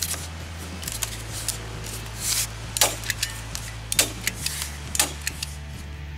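Staple gun firing again and again, a dozen or so sharp clacks at uneven intervals, driving staples through a dense foam traction pad into a wooden stair tread.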